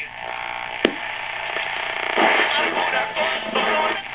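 A 42-322 wooden-cabinet tube table radio being tuned across the AM band: static and steady whistles between stations, a sharp click about a second in, then a snatch of another station with music.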